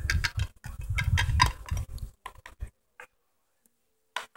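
Small plastic toy figures clicking and knocking against a plastic toy car and a glass tabletop as a hand moves them, a quick run of small knocks and low bumps that stops about two and a half seconds in, with one faint click later.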